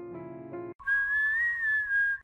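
Soft piano music that cuts off about three-quarters of a second in, followed by a person whistling one held note that rises a little and falls back.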